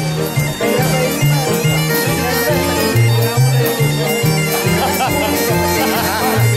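Scottish traditional music with bagpipes playing a lively tune over steady held tones and a rhythmic bass line.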